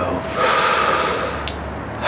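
A man taking one deep, audible breath, about a second long.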